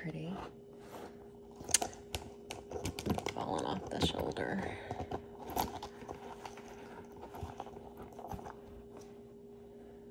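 Metal necklace handled on a display bust: scattered light clicks and clinks of its chain and pendants, the sharpest about two seconds in, growing sparser in the second half, over a faint steady hum.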